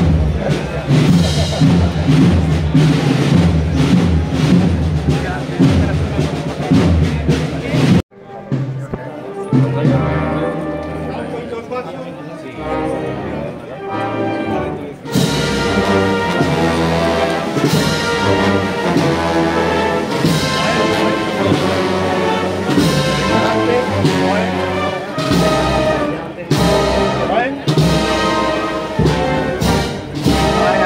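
Municipal wind band playing a processional march with brass and percussion. The sound cuts off abruptly about eight seconds in, resumes softer, and the full band swells back in at about fifteen seconds.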